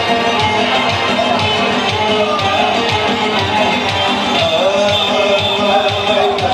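Live Kurdish dance music from an electronic keyboard band: a steady fast beat under sustained chords and a wavering melody line.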